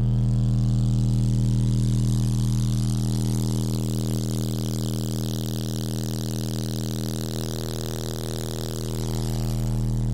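Car audio subwoofers (Timpano TPT-3500 12-inch) playing a steady, loud 40 Hz sine test tone at full amplifier power, with a buzzing rattle over the top. The level sags a little midway and comes back up near the end.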